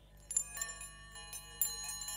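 Small metal chimes ringing, with a cluster of bright strikes about a third of a second in and another about a second later. Their clear, high tones ring on and overlap.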